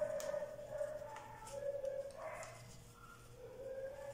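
A dog whining in the background in a few drawn-out, thin high notes with quieter gaps between them.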